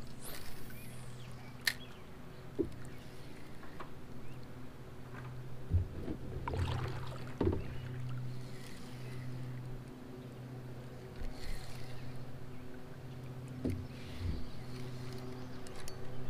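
Handling sounds in a plastic kayak: a scattering of short knocks and clunks from gear and the spinning rod and reel against the hull. Under them runs a steady low hum.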